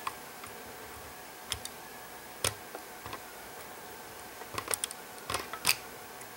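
A few light, sharp clicks of small plastic parts as a model railroad car's truck and coupler are pivoted by hand, checking that they move freely and aren't bound up. The clicks come singly at first, then in a quick cluster near the end.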